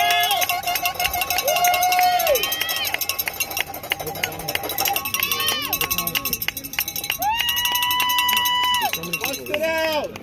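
A cowbell shaken rapidly and continuously, with spectators yelling and cheering the paddlers on, including long drawn-out shouts about two seconds in and again near the end.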